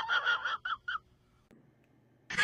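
A quick run of short, high-pitched squeaky cries, each shorter than the last, dying away about a second in.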